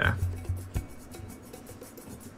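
Fingers rubbing and turning a hard plastic Kinder Surprise toy capsule, with one light click about three-quarters of a second in.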